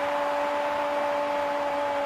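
A football commentator's long goal cry, one vowel held on a single steady pitch, over stadium crowd noise.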